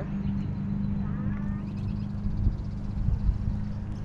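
Steady low hum of a running motor, with a faint short chirp about a second in.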